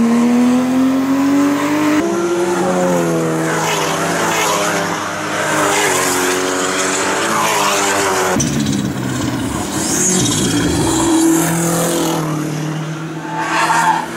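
Race car engines at racing speed in a string of short clips: an engine note rising steadily as a car accelerates away, then further cars driving past, the engine pitch rising and falling as they go through the corners, with abrupt changes where one clip cuts to the next.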